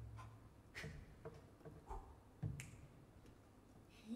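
A handful of quiet, widely spaced clicks and knocks from a piano and clarinet duo's free improvisation, struck sounds rather than sustained notes.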